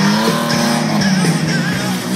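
Racing pick-up truck's engine running hard as the truck slides sideways through a turn on packed snow, with music playing underneath.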